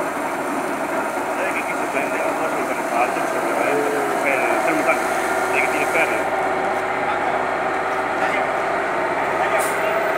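Fire engine running steadily at idle close by, with indistinct voices in the background.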